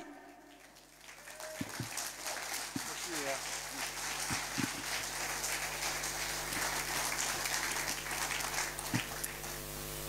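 Audience applauding in a hall, building up about a second in and then holding steady, with a few voices calling out from the crowd.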